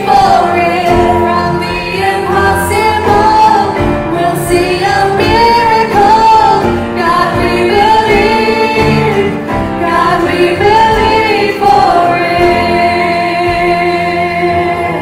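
Live worship music: a church praise team singing a gospel song together, female voices leading, over a live band.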